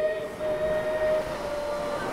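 A steady held pitched tone, several notes sounding together, whose higher notes drop away during the first second, over a faint hiss.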